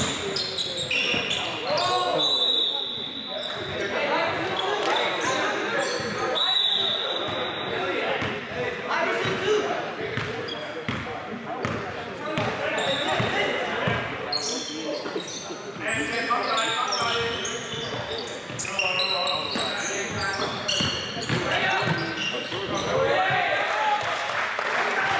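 A basketball dribbled and bouncing on a hardwood gym floor, with players' voices and calls echoing around a large gym.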